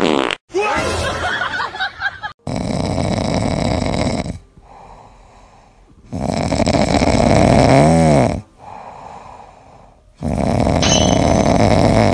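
A grey-and-white cat snoring in its sleep: three long, loud snores about four seconds apart, with quieter breaths between them. One snore ends with a short whistle that rises and falls in pitch.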